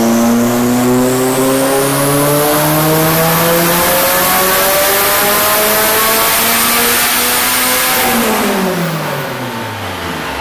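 Turbocharged Honda F20B four-cylinder running a full-throttle pull on a chassis dyno, its note climbing steadily in pitch for about eight seconds. Then the throttle comes off and the revs fall away quickly near the end. A high whistle climbs in pitch at the start.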